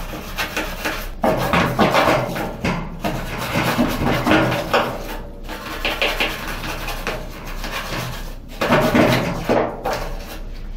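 Toothbrush bristles scrubbing the plastic rim of a washing machine's bleach dispenser in quick back-and-forth strokes, a steady scratchy rubbing with a few short pauses.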